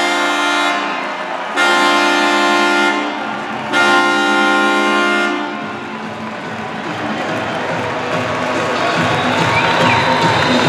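An arena goal horn sounds three long, deep, several-toned blasts, the first already going at the start. This is the signal of a home-team goal. Crowd noise continues underneath and after the blasts.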